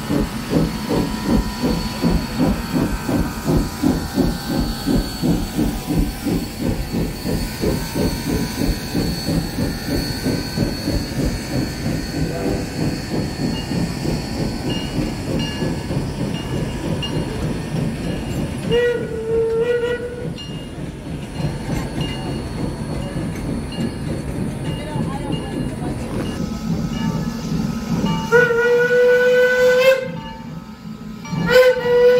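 Small steam locomotive running, its exhaust beating about three times a second with steam hissing; the beat fades in the second half. Its steam whistle blows a short blast about two-thirds of the way through and a longer one, rising slightly in pitch, near the end.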